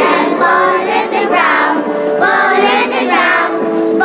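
A group of young girls singing a song together.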